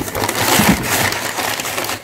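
Crumpled kraft packing paper rustling and crinkling, with cardboard rubbing against cardboard, as hands dig through a stuffed parcel box. The crackling runs dense and loud throughout.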